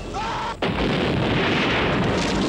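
A man's brief scream, then a loud explosion about half a second in that keeps going as a dense, heavy rumble: a film sound effect of a jeep blowing up.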